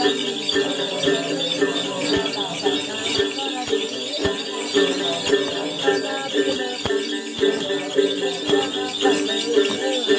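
Tày then ritual music: a woman sings while plucking a đàn tính, a long-necked gourd lute, and shaking a bunch of jingle bells.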